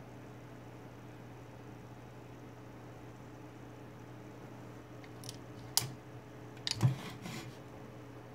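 A steady low hum, then several sharp clicks and taps from about five to seven and a half seconds in as a glass insulator is turned over in the hands. The loudest is a tap with a thump near seven seconds.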